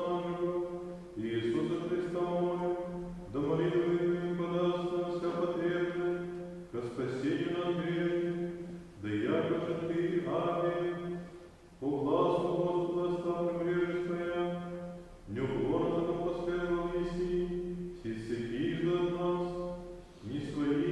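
Orthodox church chant: voices singing slow phrases of a few seconds each, on long held notes, with short breaks between phrases.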